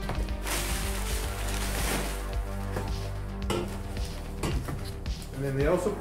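Rustling paper wrapping and a few light knocks of aluminized steel exhaust tubing being handled in a cardboard box, over steady background music.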